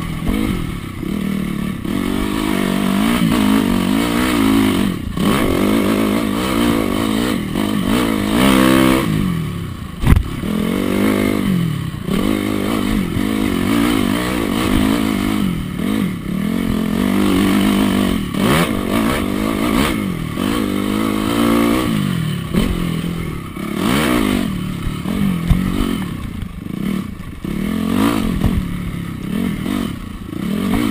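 Honda CRF250R's single-cylinder four-stroke engine revving up and falling back again and again as the dirt bike is ridden hard along a twisting dirt trail. A sharp knock stands out about ten seconds in.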